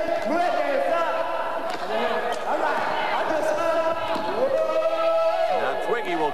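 A basketball bouncing on the court amid arena crowd noise and voices, with a steady tone running underneath.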